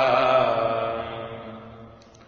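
A man's voice chanting one long drawn-out note, pitch held steady, slowly fading away.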